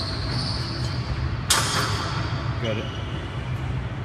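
Gym ambience: a steady low hum with a faint voice in the background, and one sharp impact about a second and a half in.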